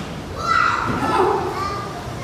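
A high-pitched voice speaking, starting about half a second in and trailing off near the end.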